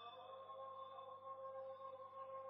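Faint devotional singing of a naat, the voice holding one long steady note.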